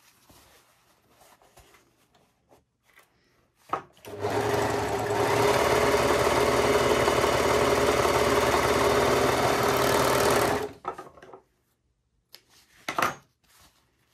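Brother 1034D overlocker stitching a test seam at steady speed for about six and a half seconds, starting about four seconds in after some quiet fabric handling, and stopping abruptly. One needle thread is not seated fully in its tension disc.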